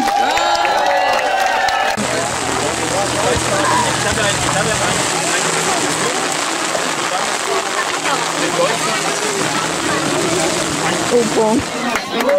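Steady rain with many people talking at once. In the first two seconds a man speaks over a microphone.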